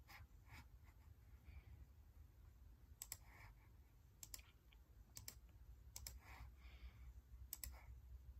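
Five faint computer mouse clicks, about one a second in the second half, each a quick double snap of button press and release, over near silence.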